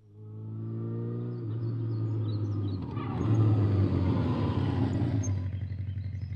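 Motorcycle engines running, rising in pitch as they rev over the first second and a half, then holding steady and getting louder about three seconds in.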